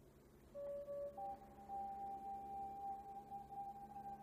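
Faint background music of soft held tones: one note comes in about half a second in, and a higher note joins about a second in and is held on.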